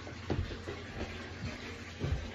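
Footsteps on carpeted stairs: a few soft thumps as the treads are stepped on to make them creak.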